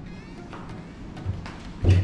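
Faint music with a low hum, then a single loud, low knock near the end as the door of a heavy wooden wardrobe is taken by its iron handle and unlatched.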